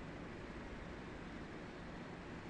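Steady, faint background noise with no distinct events: room tone and recording hiss.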